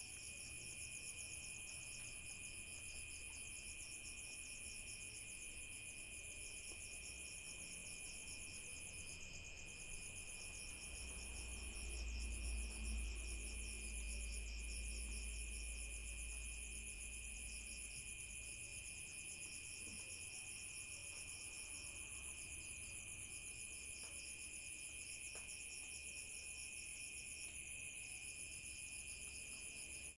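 Night insect chorus: crickets trilling steadily at several high pitches, one of them pulsing rapidly. A low rumble swells for several seconds around the middle.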